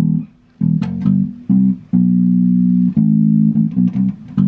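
Electric bass guitar played unaccompanied: a few short plucked notes, then two longer held notes through the middle and a few more short ones near the end.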